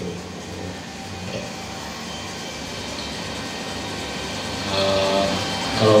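Steady mechanical hum and rumble, growing a little louder about five seconds in.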